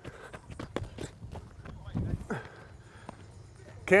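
Footsteps on grass and clothing rustle picked up close by a body-worn microphone on a walking player, with scattered faint clicks. A dull low thump comes about two seconds in.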